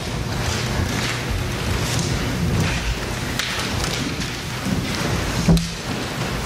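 Congregation rising from the pews: a steady mass of rustling, shuffling and knocking, with a sharper thump about five and a half seconds in.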